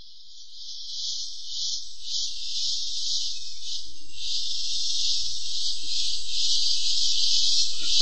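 Insect chirring sound effect: a steady, high-pitched buzz with a faint pulse, growing gradually louder.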